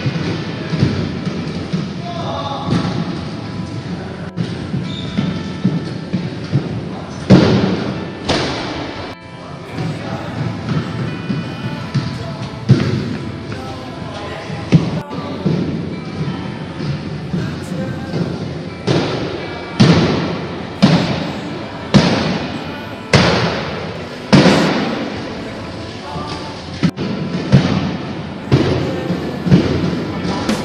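Jumping stilts landing and bouncing on a gym floor: repeated heavy thuds, coming about once a second in the second half, each followed by a short echo.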